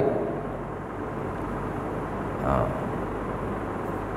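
Steady background room noise, an even low hiss and hum, with a man's brief spoken "ha" about two and a half seconds in.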